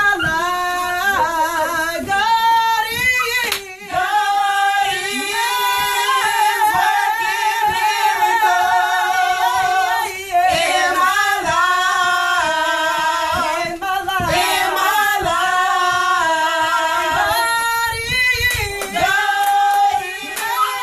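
A small group of women singing a gospel song a cappella in harmony, in phrases of held notes with short breaks between them.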